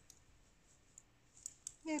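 Knitting needles clicking faintly and sparsely as stitches are worked by hand, a few light ticks, the clearest about one and a half seconds in.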